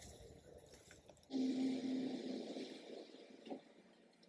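Honeybees buzzing around an open hive: a faint hum that swells about a second in, holds a steady low note and fades away, with a soft knock near the end.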